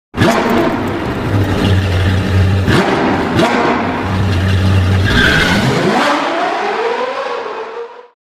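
Sports car engine sound effect: a deep, steady engine note with a couple of sharp hits, then revving up in a rising pitch from about five seconds in, fading out at the end.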